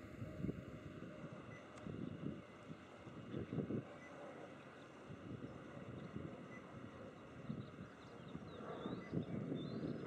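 Wind buffeting the microphone in uneven low gusts, with a Cessna 152's engine faint beneath it as the plane lands at low power.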